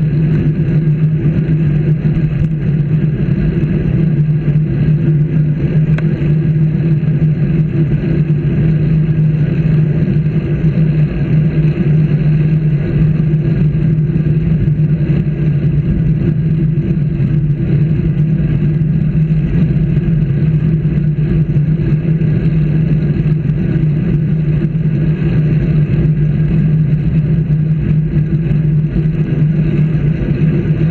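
Steady low drone of travel noise from a vehicle moving along a street, picked up by a camera riding on it, holding one pitch throughout.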